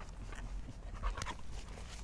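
A dog panting, in short breaths in quick succession.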